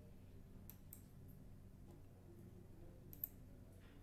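Faint computer mouse button clicks over a low, steady room hum: two close together about a second in and one more near the end.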